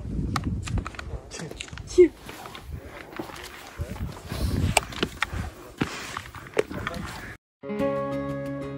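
Footsteps climbing rough stone steps, with irregular scuffs and clicks over a low rumble. Near the end the sound cuts out briefly and guitar music begins.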